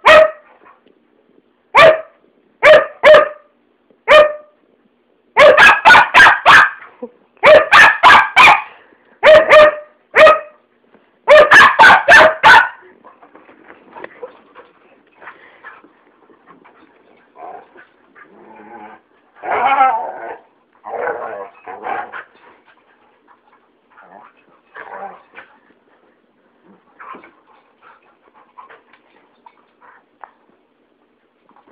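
Two huskies barking: loud, sharp barks, a few single ones at first, then rapid volleys of several barks each. After about thirteen seconds the barking stops and only softer, scattered sounds follow.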